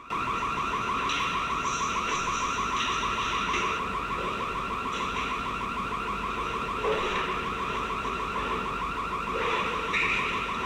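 Burglar alarm sounding: a steady, fast-pulsing electronic tone.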